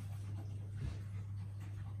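A chow chow puppy and a Rottweiler play-wrestling on a cloth: faint rustling and movement over a steady low hum, with one soft thump just before halfway.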